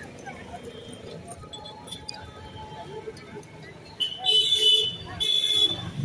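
A vehicle horn honking twice, about four seconds in, the first honk about a second long and the second shorter, over faint street background.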